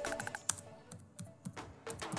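Computer keyboard typing: a run of separate key clicks as a short phrase is typed. Background music plays underneath, growing quieter after about half a second.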